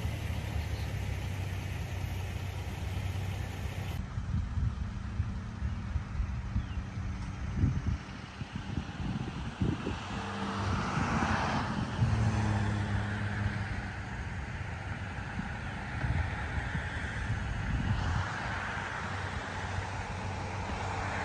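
Outdoor road-traffic noise: a steady low rumble of motor vehicles, with a passing vehicle swelling louder about ten seconds in and again near the end.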